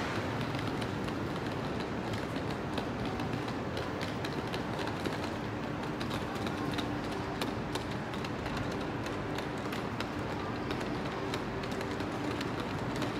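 Sound of a passenger train: a steady rumble with a faint steady hum and many small irregular clicks and rattles.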